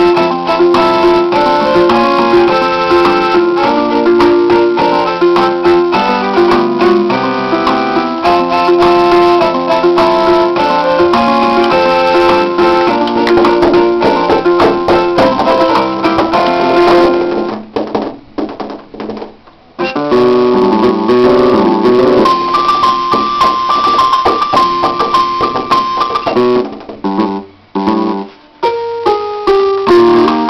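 Electronic keyboard sounding notes and chords, with two short drop-outs: one about two-thirds of the way in and another near the end.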